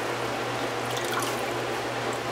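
Water dripping and trickling as a skein of wet wool yarn is squeezed out by hand over a stainless steel pot.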